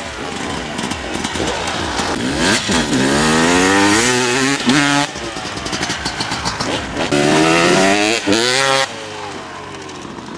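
Motocross dirt bike engines revving, their pitch rising as they accelerate and falling away again, over and over. The sound changes abruptly about five and nine seconds in.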